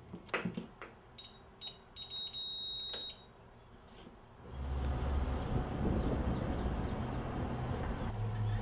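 A few door-latch clicks, then a security alarm keypad beeping: two short key-press beeps, then one steady high beep lasting about a second. About four and a half seconds in, a steady low rumble takes over and is the loudest sound.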